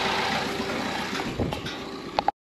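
A car engine idling steadily, slowly fading, with a few light knocks in the second half.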